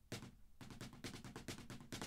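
Drumsticks playing a quiet, fast, even run of strokes on a snare drum, about ten strokes a second.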